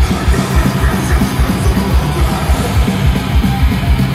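Death metal band playing live at full volume: heavily distorted guitars over rapid, pounding bass-drum pulses. It is heard from within the crowd.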